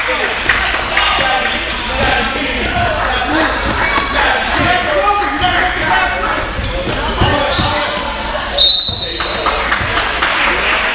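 Basketball being played on a gym floor: sneakers squeaking, the ball bouncing and spectators' voices in the hall. Near the end a short, high referee's whistle blast, the loudest sound.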